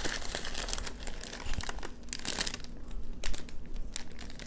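Crinkling and rustling of a clear cellophane bag and gold crinkle-cut paper shred as a wrapped item is lifted out of a gift box, in irregular crackles with louder bunches a little past halfway and near the end.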